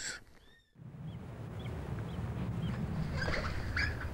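Outdoor ambience with a few short, high bird chirps. From about a second in they sit over a steady, low background noise that slowly grows louder.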